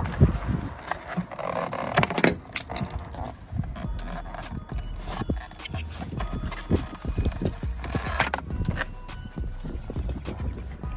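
Plastic pry tools working the tabs of a Toyota Camry's OEM side-mirror cap: irregular plastic clicks, knocks and scrapes as the tabs pop loose and the cap comes free.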